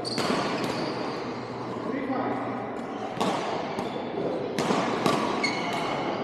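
Badminton rally: several sharp racket hits on the shuttlecock, the strongest a little after three seconds and just before five, with squeaks of court shoes and voices in between, all echoing in a large hall.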